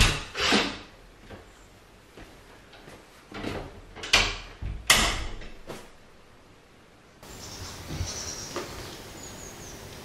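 A series of sharp clunks and knocks, typical of an interior door and its latch being opened and shut, with about six distinct knocks in the first six seconds, then quieter room noise.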